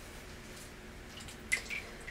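Quiet wet handling of a bar of soap at a bathroom sink, with one small sharp knock about one and a half seconds in.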